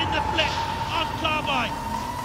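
Raised voices over the machine noise of a robot combat bout, with a steady high tone running under it.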